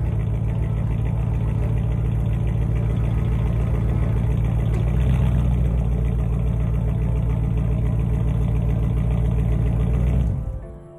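2008 Dodge Ram's Hemi V8 idling steadily, heard from behind the truck at the exhaust.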